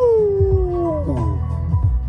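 A dog howls once, its pitch jumping up and then sliding slowly down over about a second, followed by a shorter falling whine, over a hip-hop beat with a steady bass.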